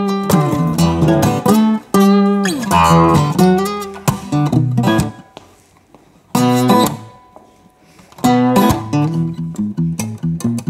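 Solo acoustic guitar playing strummed and picked chords, with notes sliding between pitches. Twice the playing stops and a chord is left to ring and fade before the next chords come in.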